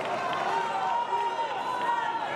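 Fencers' shoes squeaking on the piste during quick footwork, many short squeaks overlapping, over the steady chatter of a hall crowd.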